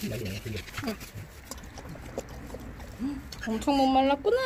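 A dog lapping water from a bowl, a string of small wet slurps and clicks. Near the end a long, steady voiced call begins.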